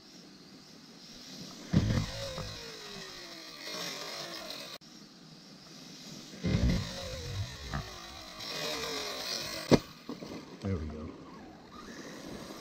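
Electric RC buggy (Arrma Typhon 6S with a 2250kv brushless motor) running on a gravel road. The motor whine rises and falls in pitch in bursts, there is a rushing hiss of tyres on gravel, and a single sharp knock comes about two seconds before the end.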